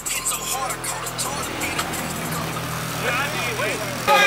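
Chevrolet Caprice's V8 idling close by with a steady low hum, mixed with people talking and music from a car stereo.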